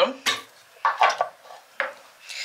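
Knocks and clinks of a cordless chopper being taken apart: its plastic lid and blade are lifted out of the glass bowl, with a cluster of clatters about a second in and a sharp click near the end.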